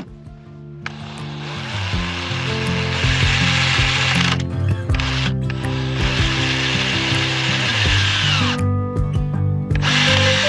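Cordless drill driving screws through a steel hinge into wood, running in long stretches with two brief stops near the middle, over background music.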